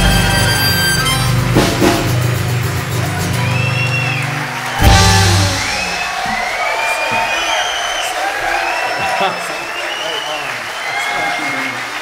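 Live band of acoustic guitar, harmonica and drums playing the last bars of a song and closing on a loud final hit about five seconds in. Audience applause and cheering follow.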